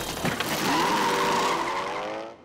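A car peeling out: tyres squealing and an engine revving up, rising in pitch as the car speeds away.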